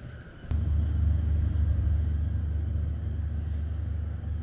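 Steady low rumble of a ferry's engines and machinery heard inside a passenger lounge, cutting in abruptly with a click about half a second in; before it, only quiet room tone with a faint high whine.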